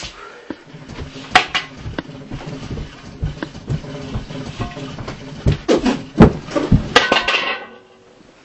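Feet scuffing and knocking on a floor in quick, irregular steps while someone dances, with a few sharp knocks, the loudest near the end, before it stops suddenly.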